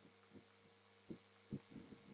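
Faint chalk writing on a blackboard: a few short, soft taps about half a second apart, over a steady low hum.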